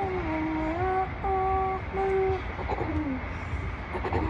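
A child's voice humming a wordless tune in held notes, dipping and rising in pitch early on and sliding down about three seconds in. Under it runs a steady low rumble.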